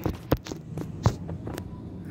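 A handheld phone being handled: a handful of short knocks and clicks, the loudest about a second in, over a steady low hum.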